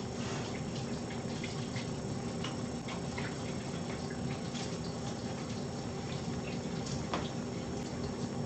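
Steady room noise with a low hum, broken by a few faint, scattered clicks and taps.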